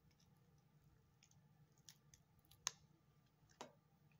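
Mostly near silence, with a few faint short clicks as a clear silicone mold is flexed and a cured resin charm is popped out of it; the sharpest click comes just under three seconds in, another about a second later.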